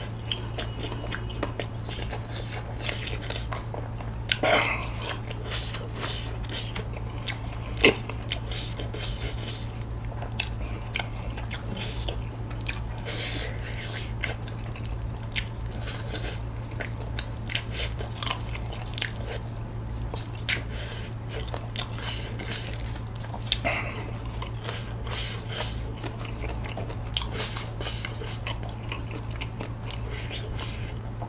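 Close-miked chewing and biting of saucy, spicy glazed chicken drumsticks: irregular wet smacks and crunches, with a sharp click about eight seconds in, over a steady low hum.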